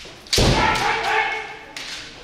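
A kendoka's attack: a stamp of the front foot on the wooden floor and a shinai strike, with a loud kiai shout held for over a second and fading. Another sharp knock comes near the end.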